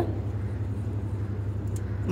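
Butterfly Rhino Plus wet grinder running steadily: a low motor hum under the churn of its stone rollers grinding batter in the turning drum, with water just added to the batter.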